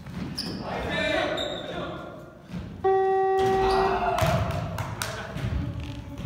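A basketball bounces on a hardwood gym floor while players call out. About three seconds in, the gym's scoreboard buzzer sounds one steady, loud tone for just over a second, signalling a stop in play.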